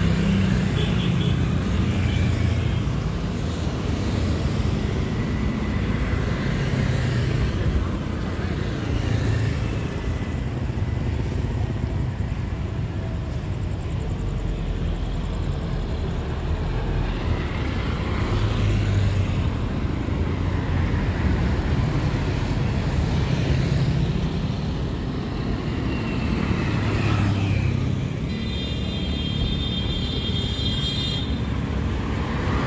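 City road traffic: motorcycles and cars passing, a steady low rumble that swells several times as vehicles go by.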